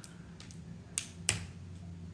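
Small sharp plastic clicks from a brow pencil being handled and uncapped: one faint click, then two louder ones about a third of a second apart.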